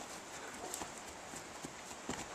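Faint outdoor background with a few light, scattered clicks and knocks from lacrosse players running on grass, their footfalls and sticks.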